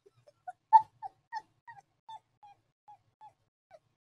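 A woman's held-in giggling: a string of short, high-pitched squeaks, about three a second, fading towards the end.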